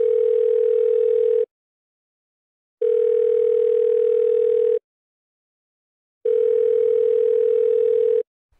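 Telephone ringback tone: a steady tone about two seconds long, heard three times with short gaps, as an outgoing call rings at the other end before being answered.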